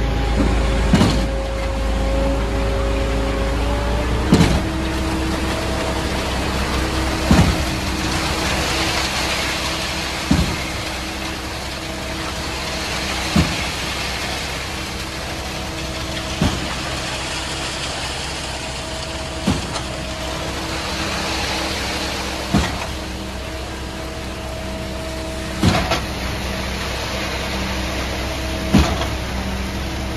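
Truck-mounted concrete pump and diesel engines running steadily while concrete is pumped. A sharp knock comes about every three seconds as the pump's cylinders change stroke.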